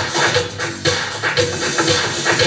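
1980s dance track played from vinyl records in a DJ mix, with a steady beat.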